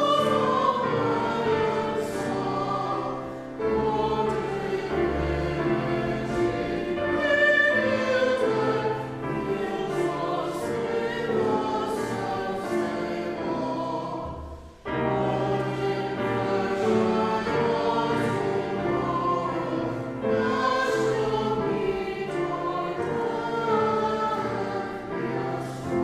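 Congregation singing a hymn together, accompanied on grand piano. The singing stops briefly about halfway through between lines, then carries on.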